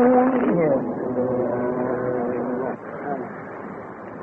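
A male Quran reciter's long sung note slides downward and ends about half a second in. A quieter, lower held tone follows and breaks off a little before three seconds, leaving the faint background noise of an old live recording.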